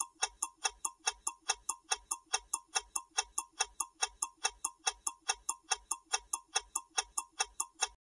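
Countdown-timer ticking-clock sound effect: even, dry ticks at about two and a half a second.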